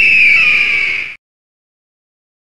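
A bird-of-prey screech: one loud, high call gliding slightly down in pitch, which cuts off about a second in.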